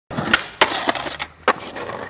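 Skateboard rolling on hard ground, with four sharp cracks of the board striking the ground in under two seconds.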